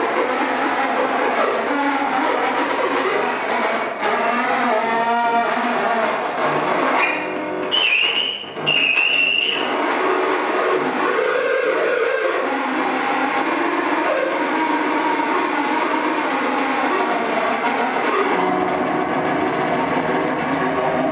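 Loud live harsh noise music from electronics played through a PA: a dense, distorted wall of sound with shifting pitches. About seven seconds in it is broken by a high squealing tone with brief dropouts.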